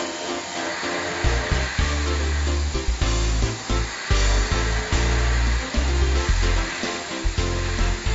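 Background music with a bass line that changes note about every half second, over the steady whirring hiss of a Kitamura Mycenter 7X machining center high-speed milling a steel forging die.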